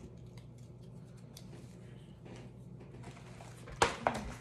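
Light rustling and small clicks of a folded paper slip being handled and unfolded by hand, with one sharp knock near the end.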